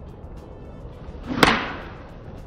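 A golf iron swung through and striking a ball off a driving-range mat about one and a half seconds in: a short swish, then one sharp crack. The strike is clean, sending the ball out dead straight.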